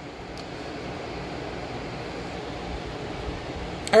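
Steady mechanical hum and hiss of background room noise, with a faint low steady tone running under it.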